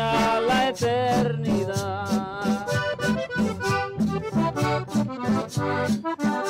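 Live band music: an electronic drum kit keeping a steady beat under an amplified acoustic guitar and a melody of held notes.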